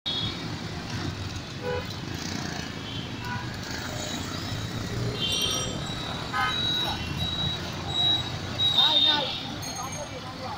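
Mixed city road traffic: a steady rumble of motorbike, auto-rickshaw and car engines, with vehicle horns tooting several times and high, thin ringing tones, loudest in the second half.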